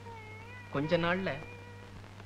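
Meowing calls: a faint wavering one, then a louder, drawn-out one that bends in pitch about a second in.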